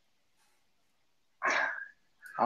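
A man's single short, breathy vocal burst about one and a half seconds in, after near silence.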